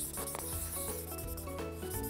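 A small lacquered piece being rubbed by hand, a steady soft hiss of rubbing, over background music with sustained tones.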